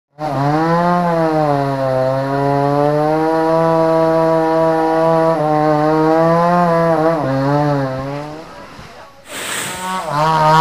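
Two-stroke chainsaw running at high revs in a cut, its pitch sagging briefly a few times as the bar loads, then fading about eight seconds in. A short rush of noise follows near the end.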